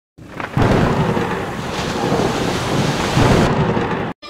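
Thunder rolling over steady heavy rain, the rumble setting in about half a second in. The rain's hiss drops away near the end.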